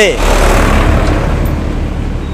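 A tipper truck passing close by on the road, its engine rumble and tyre noise steady and easing slightly toward the end.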